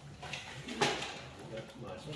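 Low, indistinct talk among a few people at a meeting table, with one short sharp sound, such as a knock or tap, a little before a second in.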